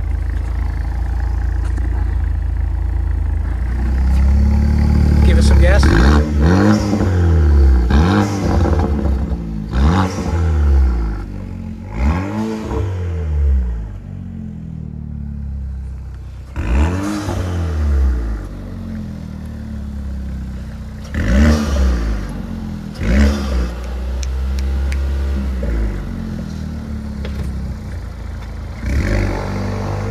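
2020 Vanderhall Carmel autocycle's turbocharged 1.5-litre four-cylinder engine idling, blipped in a series of short revs that rise and fall in pitch, several close together in the first half and a few more spaced out later.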